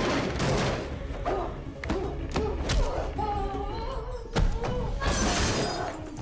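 Fight-scene sound effects: a rapid series of punch and body-impact thuds with short effort grunts, over a low music score, and a louder crash near the end.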